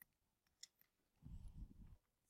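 Near silence: room tone with a few faint clicks, then a low rumble lasting under a second near the end.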